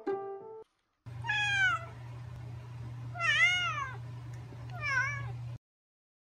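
A cat meowing three times, each meow about half a second long and arching up and down in pitch, over a steady low hum. Just before, a short melody of plucked-sounding notes ends about half a second in.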